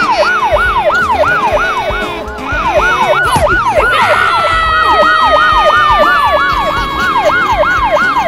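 Police siren sound effect: a fast, repeating wail of about three falling sweeps a second. A second, longer tone joins about halfway through and slides slowly lower.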